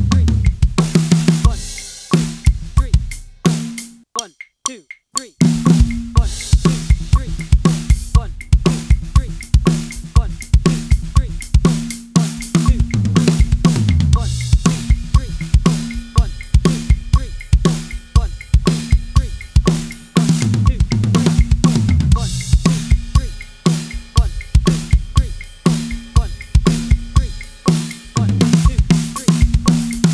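Drum kit played in fast linear fills grouped 6-6-4, the strokes moving freely between snare, toms, cymbals and two bass drums. A brief pause comes about four seconds in, and the playing then resumes at a faster tempo, 120 BPM after 90.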